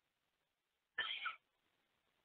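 Near silence, broken about a second in by one short, faint voice-like sound lasting about a third of a second.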